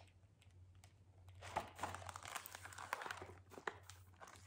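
Pages of a spiral-bound book being leafed through and handled: faint paper rustling with quick crinkles, busier from about a second and a half in.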